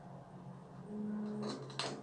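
Faint handling noises of a plastic jar of styling gel and a brow brush, ending in a short click near the end.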